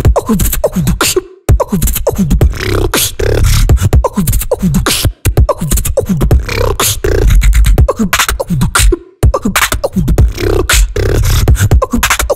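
Beatboxing into a handheld microphone: a fast, dense, all-by-mouth drum pattern of deep bass kicks, snares and clicks. It drops out for a split second three times, about a second and a half in, about five seconds in and about nine seconds in.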